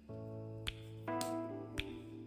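Soft background music of sustained chords that change about once a second, with a sharp finger snap twice.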